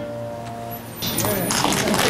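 The last piano chord of a hymn dies away; about a second in, the congregation starts clapping.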